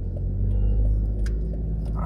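Steady low rumble of a car driving, with engine and road noise.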